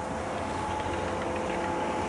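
A steady mechanical hum with several unchanging tones over a constant hiss, like a machine running at a distance.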